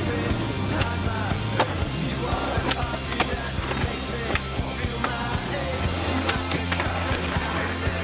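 Skateboard rolling and clacking, with sharp board impacts at uneven intervals, over a music soundtrack with a steady bass line.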